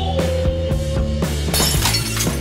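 Background music with a steady drum beat. About one and a half seconds in, a loud shattering crash as a warehouse rack of stacked goods collapses.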